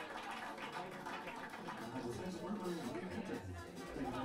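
Indistinct voices of people talking, with music underneath.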